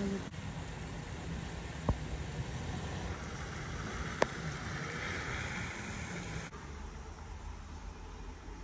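Steady rumble and hiss of a camper van on the road, heard from inside the cabin, with two brief sharp clicks. About 6.5 seconds in it cuts to a quieter steady hiss.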